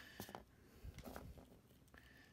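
Faint handling sounds of a small plastic action figure: a few soft clicks and taps as its hand pieces are pulled and swapped, over near silence.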